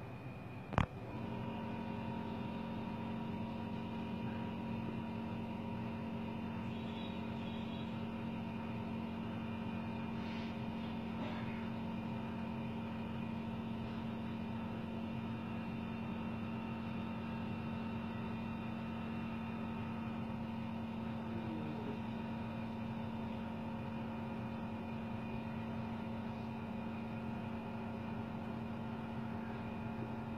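A sharp click about a second in, after which a steady machine hum made of several fixed tones sets in and runs on unchanged.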